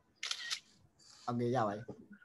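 Speech only: a brief breathy hiss, then a man saying a short word or two over a video call.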